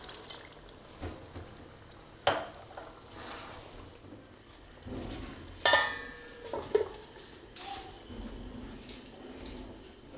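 A metal ladle knocking and scraping in a steel karahi of curry, then a steel lid set on the pan with a ringing metallic clang a little past halfway, followed by a few lighter knocks.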